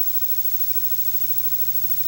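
Steady low electrical hum with a buzz of evenly spaced overtones and a constant hiss, unchanging throughout: the background noise of an old off-air TV recording during a break between segments.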